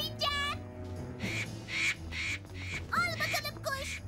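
Cartoon soundtrack music with a regular beat of short pulses, about two to three a second, and a few short high gliding cries from an animated character about three seconds in.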